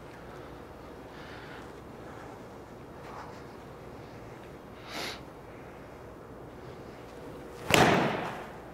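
Quiet room tone, then near the end one sharp, loud strike of a PXG 0317 ST blade pitching wedge on a golf ball off a hitting mat, with a short tail. The shot is caught fat, the club meeting the mat before the ball.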